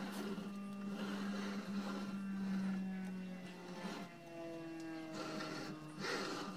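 Monoprice Select Plus 3D printer's stepper motors running: a steady pitched hum for the first half, then pitched whines that slide and shift in pitch through the second half.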